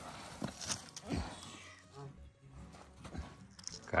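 Scattered soft scuffs, rustles and light knocks on dry dirt as a man shifts around and sits down on a horse lying on its side.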